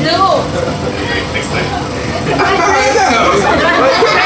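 Several voices chattering and talking over one another.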